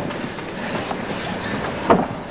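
Steady arena crowd noise from a seated audience, with single voices calling out over it and one short loud call near the end.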